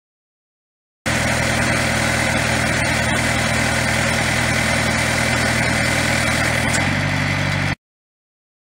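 Diesel engine of a Protech tracked post driver (a 48 hp Yanmar) running steadily, its low hum shifting slightly in pitch near the end. The sound starts suddenly about a second in and cuts off abruptly just before the end.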